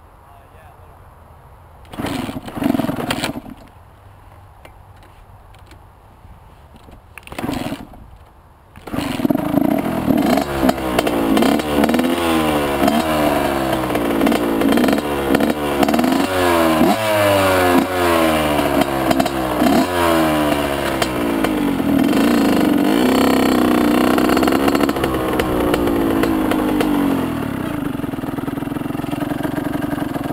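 Honda CR85 big-wheel's two-stroke 85cc engine being kick-started: two brief bursts, then it catches about nine seconds in and runs. It is revved up and down repeatedly, then settles to a steadier run near the end.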